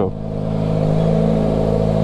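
Motorcycle engine running at low speed while ridden, its note rising a little in the first half second and then holding steady.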